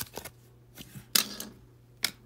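Trading cards handled by hand: a few light clicks of card stock and, about a second in, one short, louder rustle.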